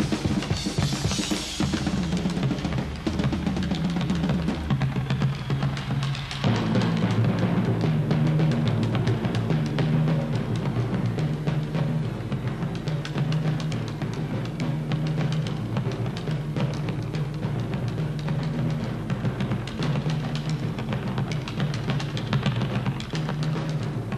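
Drum solo on a rock drum kit: rapid strokes and rolls across snare, toms and bass drum. About six seconds in, the low drum tones change suddenly.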